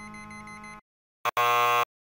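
A faint steady synthesized tone stops under a second in. After a brief blip, a short, loud, harsh buzzing tone sounds for about half a second: a waveform with its peaks cut flat by digital clipping.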